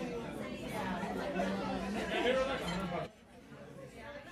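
Restaurant dining-room chatter: several voices talking at once at nearby tables. The sound drops away suddenly about three seconds in.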